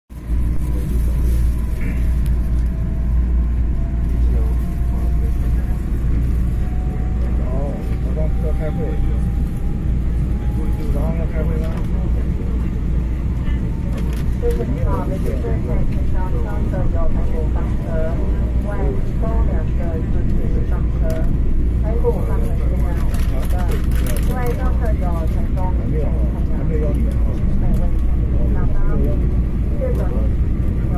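Inside an EMU3000 electric train running through a tunnel: a steady low rumble of wheels and running gear, with a traction-motor whine that slowly rises in pitch over the first ten seconds or so as the train accelerates away from the station. Passengers talk in the background.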